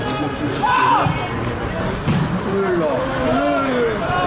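Spectators' voices close by: men talking and calling out in the stands, with a drawn-out shout in the second half.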